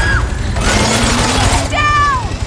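A loud burst of machine-gun fire and impacts, lasting about a second, in an action-film gunfight. Near the end a woman shouts "Down!".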